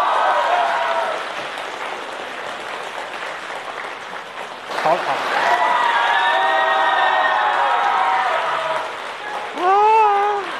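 Theatre audience applauding and cheering. About five seconds in, a chorus of many voices holding long cheering calls rises over the applause for a few seconds, then fades.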